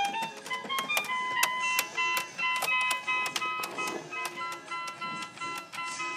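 Kawasaki toy electronic keyboard played by hand: quick runs of short, thin electronic notes at many different pitches, each starting sharply.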